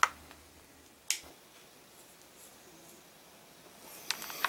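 Quiet room tone with one short, sharp click about a second in.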